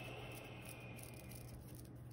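Quiet room tone: a low steady hum with a faint soft hiss that fades out about one and a half seconds in.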